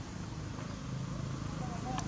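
Faint, indistinct human voices over a steady outdoor hiss, with a few soft short chirps near the end.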